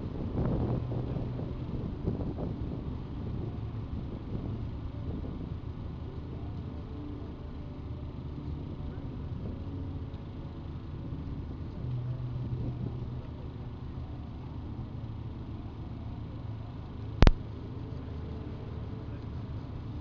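Steady low rumble of motorway traffic and running vehicle engines, with a low hum that swells briefly near the start and again about twelve seconds in. A single sharp click, the loudest sound, comes about seventeen seconds in.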